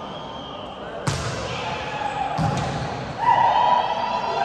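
Volleyball hit by hand: a sharp smack about a second in and a softer contact more than a second later, echoing in a large gym, with players' and onlookers' voices. A loud held tone starts near the end.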